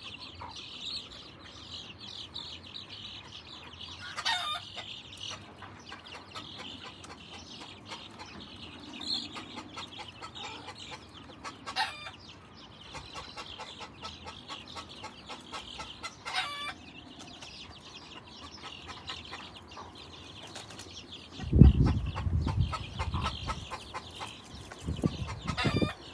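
Chickens clucking and peeping in a steady chatter, with a few louder calls. A loud low rumble comes in near the end.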